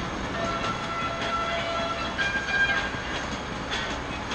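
Steady road rumble inside a moving car, under a few long held notes of music from the car stereo; the note changes about two seconds in.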